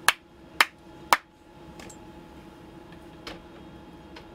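Three sharp hand claps about half a second apart, followed by a couple of faint clicks, over the steady hum of the space station's ventilation.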